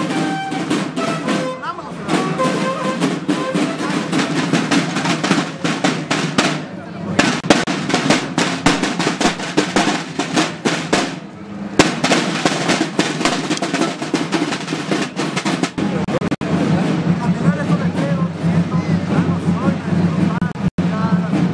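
A marching band's snare drums beating a rapid marching cadence, with two short breaks about seven and eleven seconds in.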